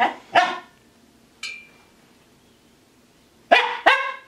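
Finnish Spitz barking in short, sharp barks: two close together at the start and two more about three and a half seconds in.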